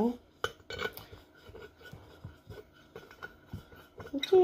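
Scattered light clicks, knocks and clinks of a ceramic wax warmer and its parts being handled.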